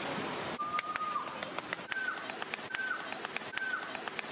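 A bird whistling four clear notes: one longer steady note, then three shorter, higher notes that drop in pitch at the end. Sharp clicks and water splashing run underneath.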